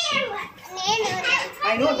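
Young children's voices chattering and calling out at play, high-pitched.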